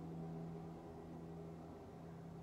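Faint steady hum of room tone, a low even drone with no breaks.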